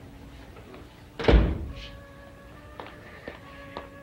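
A single heavy thud about a second and a quarter in, followed by faint, steadily held dramatic music tones.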